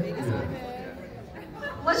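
A pause in speech over a public-address system in a large hall, filled by faint audience chatter and room echo. A man's amplified voice starts again near the end.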